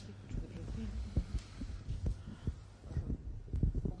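Irregular low thumps and bumps of a handheld microphone being handled as it is passed on.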